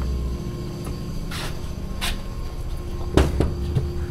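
A steady low hum with a couple of faint clicks, then a single sharp knock about three seconds in, a knock at an office window.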